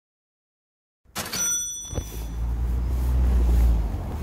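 A second of silence, then outdoor sound cuts in: a cardboard box's flaps being handled over a strong low rumble that grows louder toward the end. There are thin high tones for about half a second at the start and a short crack about two seconds in.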